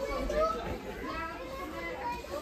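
Indistinct background voices, children's voices among them.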